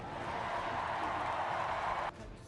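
A large audience applauding in a steady, dense wash of clapping that cuts off abruptly at the end.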